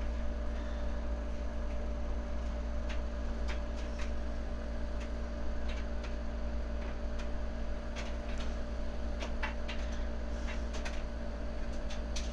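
Light fingertip taps on an iPad touchscreen, scattered faint clicks every second or so, over a steady low electrical hum.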